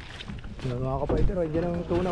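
Background speech: people talking, with a low rumble underneath.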